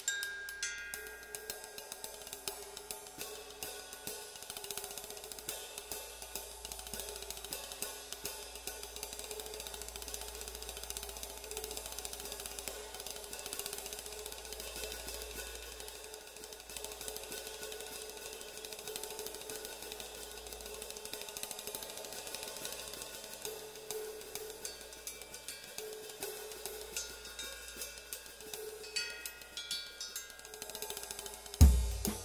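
Drum kit played quietly with sticks, with a continuous ride pattern on a small Paiste flat ride cymbal, hi-hat and light snare strokes. It is the soft, controlled cymbal sound suited to a light piano-trio jazz setting.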